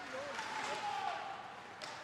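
Ice hockey rink ambience during play: skate blades scraping the ice with faint voices in the stands, and a sharp stick-on-puck crack near the end as the puck is cleared down the ice.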